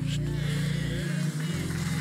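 Low, sustained background music chords held under a pause in the preaching, shifting to a new chord about a second and a half in.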